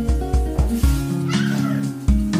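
Background music with a steady beat, and about a second and a half in a short cat meow over it.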